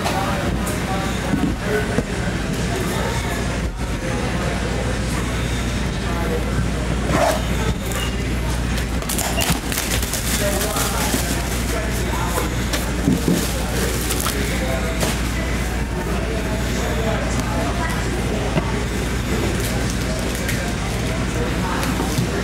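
A steady low electrical hum under indistinct background voices, with a few crinkles and taps as shrink-wrapped card boxes are handled and opened, most of them about nine to ten seconds in.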